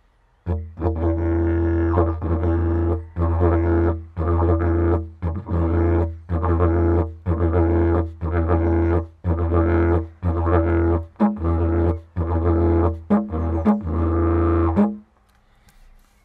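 Didgeridoo played: a loud, low drone with bright overtones, cut into rhythmic pulses about once a second. It starts about half a second in, a few higher notes come near the end, and it stops about a second before the end.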